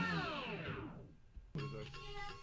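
A soul music sample winding down to a stop, its whole pitch falling over about a second like a tape stop. Music cuts back in abruptly about a second and a half in.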